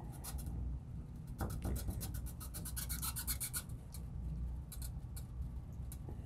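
A cloth rubbing back and forth on a black marker board, wiping off neon marker writing: a run of quick scrubbing strokes, busiest about halfway through, over a low steady hum.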